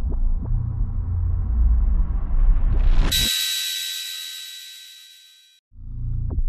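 Cinematic logo-reveal sound effect: a deep rumble builds under a rising whoosh for about three seconds, then gives way suddenly to a bright, high shimmering chime that rings and fades away. Just before the end a new low rumble starts.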